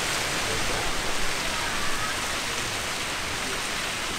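Castle Geyser erupting: a steady rushing noise of hot water and steam jetting from its cone.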